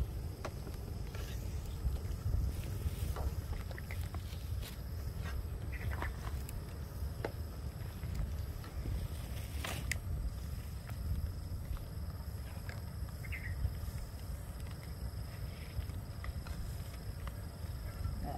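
A metal ladle lifting tamarind pods from water in an aluminium pot, with a few light clinks of metal against the pot and the bowl, over a steady low rumble.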